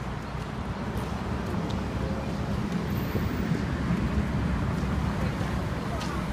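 Steady low rumble of street traffic, growing a little louder toward the middle.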